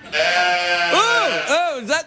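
A man's comic nonsense vocal noise: a held nasal tone, then a few quick swoops up and down in pitch.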